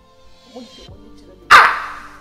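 A single loud dog bark about one and a half seconds in, dropped in as a comedy sound effect over quiet background music.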